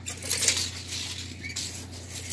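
Steel tape measure blade being drawn out and slid across a wooden beam: a rattly metallic scraping that starts suddenly and fades out over about a second and a half.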